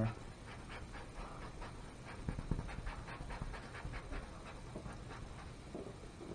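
Quiet, repeated scratchy strokes of a paintbrush scrubbing acrylic paint onto a canvas.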